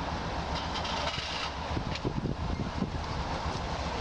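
Outdoor ambience under a steady, irregular low rumble of wind buffeting the camera microphone, with a few faint brief rustles.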